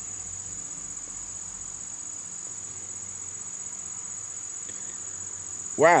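Crickets trilling, a steady high-pitched trill that runs on without a break.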